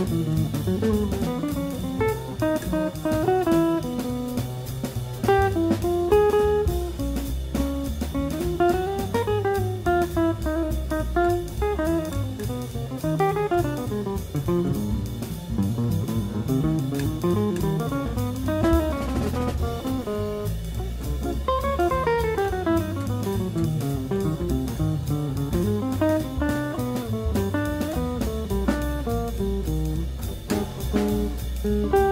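Jazz guitar solo on an archtop hollow-body electric guitar: quick single-note runs that climb and fall, over bass and drum kit.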